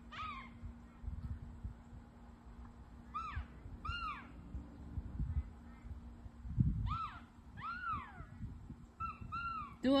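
Canada geese honking: short arched honks, mostly in pairs, repeating about every three seconds.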